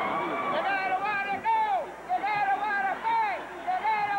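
Cheerleaders chanting in unison: high voices holding drawn-out words that drop in pitch at their ends, repeated several times, over gym crowd noise.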